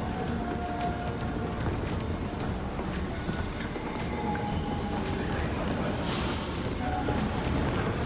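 Steady hum of a large indoor train-station concourse, with scattered footsteps and faint music.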